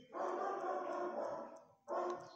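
A dog barking loudly in a concrete-block shelter kennel: one drawn-out call lasting about a second and a half, then another starting near the end.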